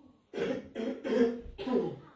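A woman's voice in three short vocal bursts, harsh enough to be taken for coughing.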